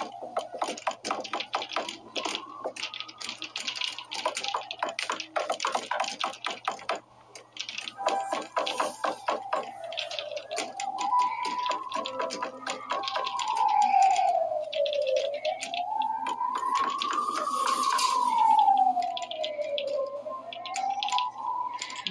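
Horror film soundtrack: an eerie single tone that slowly rises and falls, about one swell every five seconds. For roughly the first eight seconds it runs under rapid clicking, like typing.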